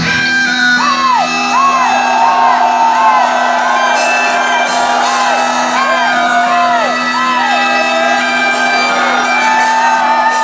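Live pagan metal song in a break: the drums and bass drop out while a steady low drone holds, and voices call out over it in many short rising-and-falling shouts and whoops. The full band comes back in just after.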